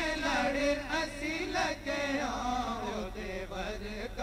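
Punjabi naat, a devotional song, sung by male voices in long, gliding, ornamented melodic lines.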